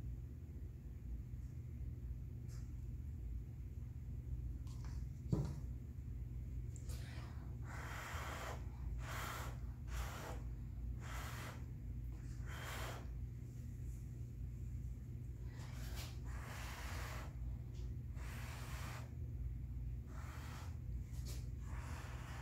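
A person blowing hard by mouth onto wet acrylic paint, a dozen or so short puffs of breath that push the poured paint across the canvas. A single knock comes about five seconds in, over a steady low hum.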